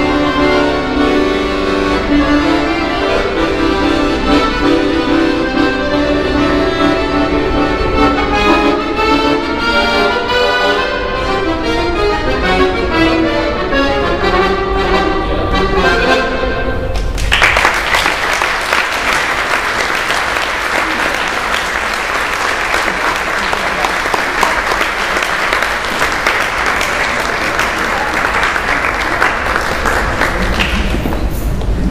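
Paolo Soprani chromatic button accordion played solo in a fast, busy passage. The music stops about 17 seconds in, and audience applause follows for the rest.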